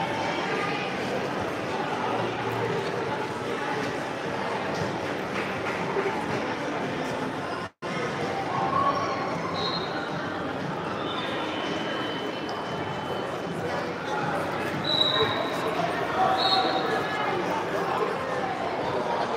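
Hubbub of spectators' voices echoing in a large sports hall, talking and calling out over the wrestling, with a few short high squeaks in the second half. The sound cuts out completely for an instant about eight seconds in.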